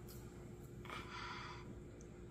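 Quiet, with a faint soft squelch about a second in from hands squeezing and lifting cornstarch-and-water oobleck in a glass bowl.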